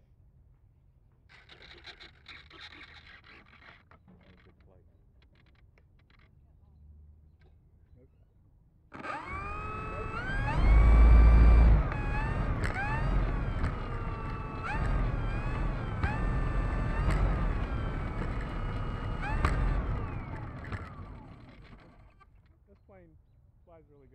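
E-flite Turbo Timber Evolution's brushless electric motor and propeller running up on the ground, starting suddenly about nine seconds in. The whine rises in pitch several times with throttle blips and then settles, and winds down and stops a couple of seconds before the end. A low rumble is loudest in the first couple of seconds of the run.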